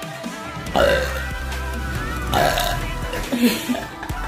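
Two loud burps about a second and a half apart, followed by laughter near the end, over background music.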